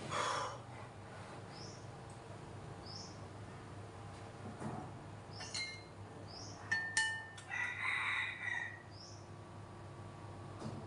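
A rooster crowing, with a loud crow lasting about a second near the end, and light clinks of a spoon and chopsticks against a rice bowl.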